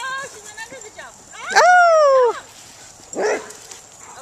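Dog barking during a game of fetch: one loud, drawn-out bark that rises and then falls in pitch about halfway through, and a shorter bark near the end.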